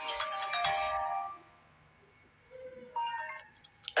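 A short electronic chime-like jingle of several steady notes sounding together, lasting about a second, then a fainter brief few notes about three seconds in.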